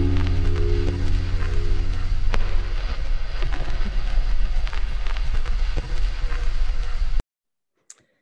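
Background music of held chords that fade out within about three seconds, giving way to a hissing, crackling texture that cuts off suddenly near the end.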